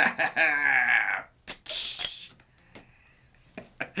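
A man's drawn-out vocal sound. Then, about a second and a half in, a sharp click and a short hiss as a pry-off cap is levered off a glass beer bottle with a Leatherman Skeletool's carabiner bottle opener and the gas escapes. A few faint clicks come near the end.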